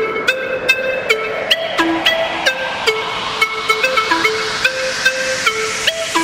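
Electronic music: a melody of short plucked synth notes over a hissing noise sweep that grows louder and brighter as it builds toward a drop.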